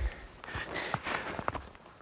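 Footsteps in snow: a few soft, irregular steps and clicks over a faint hiss, with a low thump at the start.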